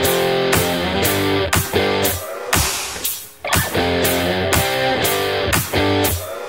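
Background rock music: electric guitar chords over a steady beat of about two beats a second.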